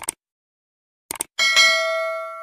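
Subscribe-button animation sound effects: a quick double mouse click, another double click about a second later, then a bell chime that rings on and lingers.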